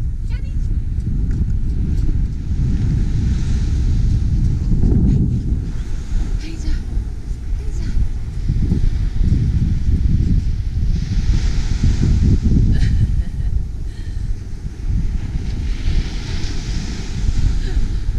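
Wind buffeting the camera's microphone: a heavy, uneven low rumble that swells and dips, with ocean surf washing underneath.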